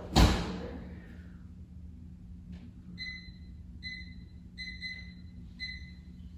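A loud thud just after the start, like an oven door being shut, then a string of five short electronic beeps of one pitch from the oven's control panel, from about three seconds in.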